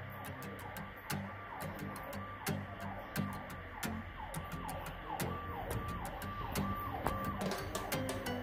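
Audio from a laptop speaker: music with a siren-like falling tone repeating a little under twice a second, starting about a second in. Scattered sharp clicks of laptop keys being tapped run through it.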